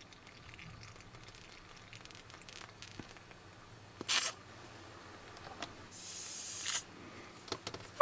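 A small soft plastic toy bottle of water squeezed against a doll's mouth: faint squishing and handling, with a short hiss about four seconds in and a longer hiss a little after six seconds.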